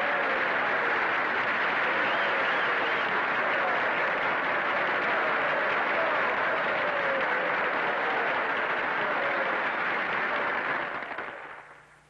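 A large banquet audience applauding steadily, the clapping dying away over the last second or so.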